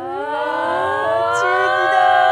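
A swell of several held tones from the episode's soundtrack, slowly rising in pitch together.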